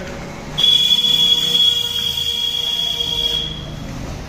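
A single high-pitched, steady whistle-like tone that starts about half a second in and holds for nearly three seconds before stopping.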